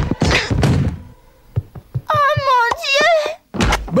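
Cartoon sound effects of a body tumbling down wooden stairs: a run of thumps in the first second, then a few small knocks. A wavering vocal cry follows about two seconds in, and a heavy thud comes just before speech begins at the end.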